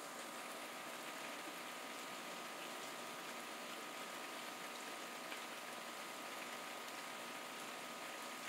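Steady hiss of falling rain, even throughout, with a faint steady tone underneath.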